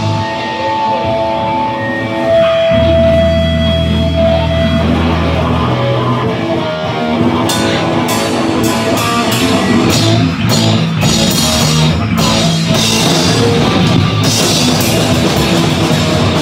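Live rock band playing loud with electric guitars: held, ringing guitar notes over a deep sustained low note, then drums with cymbal hits come in about seven and a half seconds in and the full band plays on.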